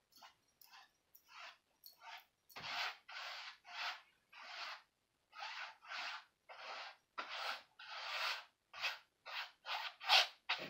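A paintbrush swept back and forth across a canvas in short, scratchy dry-brush strokes, one or two a second, with brief pauses between them.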